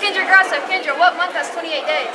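Speech over the chatter of a crowd in a large, busy room.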